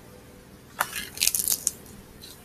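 A hardcover picture book being closed and moved by hand: a short cluster of crisp paper and cover rustles and clicks about a second in.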